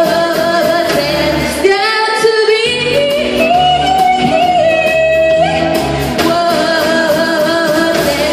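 A woman singing live into a microphone over instrumental accompaniment, holding long notes. The low part of the accompaniment drops out for about a second, about two seconds in.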